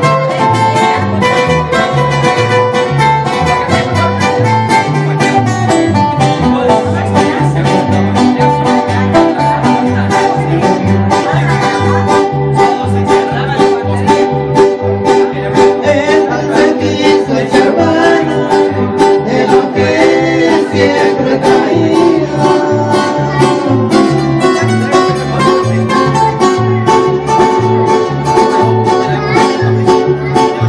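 A small live band playing: strummed acoustic guitars over a steady, bouncing bass line, with a man singing into a microphone.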